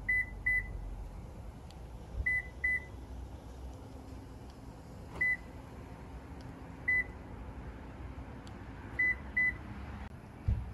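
Short electronic beeps, all at the same high pitch, in an uneven pattern: a double beep, another double beep, two single beeps, then a final double beep.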